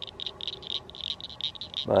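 A steady chorus of small frogs at a pond: high, rapid chirping pulses, about five a second. A man starts to speak at the very end.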